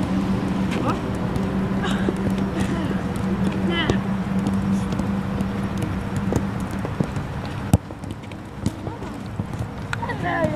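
Footballs being kicked on a dirt pitch, sharp knocks at irregular intervals, with brief distant shouts from players and a coach. A steady low hum runs underneath and cuts off suddenly just before the end.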